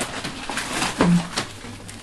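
Light crinkles and clicks from a gift-wrapped box being handled, with one short low murmur about a second in.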